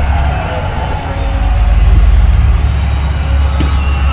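Steady low rumble of outdoor noise, loudest around the middle, with faint voices over it.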